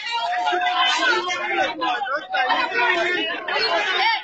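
Several people talking loudly at once: overlapping crowd chatter.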